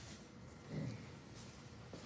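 Faint strokes of a dry-erase marker on a whiteboard.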